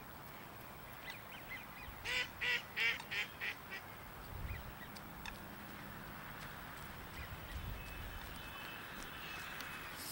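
Ducks quacking: a quick run of about six quacks about two seconds in, the last ones fading, then only faint calls over steady outdoor background noise.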